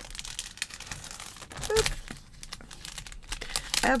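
Clear plastic packaging crinkling and rustling as hands open it and slide a stack of blank cards out, with a louder rustle about halfway through.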